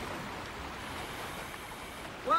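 Steady wash of sea water at the surface, an even, fairly quiet rush with no distinct splashes.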